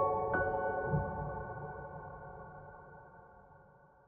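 Soft, slow piano music ending: a last high note is struck just after the start, then the held notes ring on and die away steadily over about three seconds.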